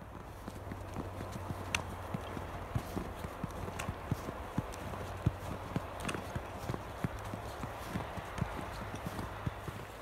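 Footsteps crunching in fresh snow at a steady walking pace, a few steps a second.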